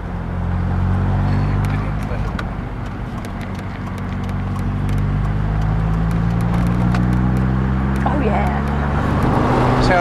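Lotus sports car engine heard from inside the car, pulling at low revs. Its note sags a little about three seconds in, then climbs gradually and smoothly as the throttle is eased on.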